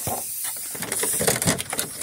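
Handling noise: rustling, with a quick run of clicks and knocks from about a third of the way in.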